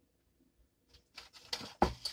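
After a near-silent second, soft mouth and breath sounds follow a drink of water, then a sharp knock near the end as a drinking glass is set down on the table.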